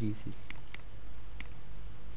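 Three sharp computer mouse clicks, two close together about half a second in and a third a little later, over a low steady background hum.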